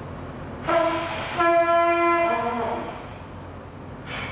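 Trumpet blown in three held notes: a short one, a longer one at about the same pitch, then a lower note that ends a little under three seconds in.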